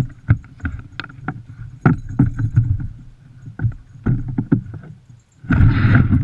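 Irregular knocks, thumps and creaks from a dog sled's frame jolting on the snow as the harnessed Siberian huskies tug at the gangline, with a burst of rushing noise near the end.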